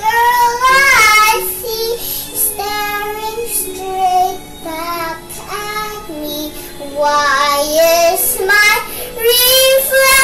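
A young girl singing a song, holding notes and gliding between them.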